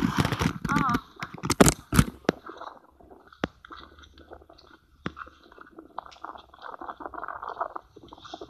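A young child's voice for the first two seconds or so, then quieter crackling and rustling with a few sharp clicks.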